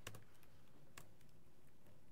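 Faint keystrokes on a laptop keyboard: a few scattered clicks, with a sharper one about a second in.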